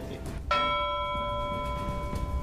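A bell-like chime struck once about half a second in, a chord of several steady tones held evenly for about two seconds: a news bulletin's transition sting between stories.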